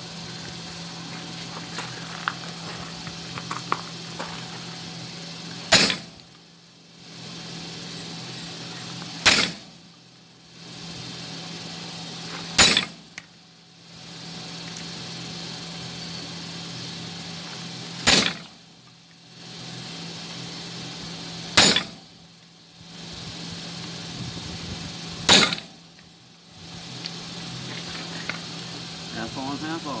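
Six single hammer blows on red-hot steel held on an anvil, each a sharp clang with a high ring, spaced a few seconds apart, over a steady low hum. The smith is hot-forging the steel into a hot cut hardie.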